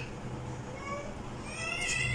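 A faint, high-pitched, drawn-out cry that starts about a second and a half in, rising slightly in pitch, preceded by a couple of brief faint peeps.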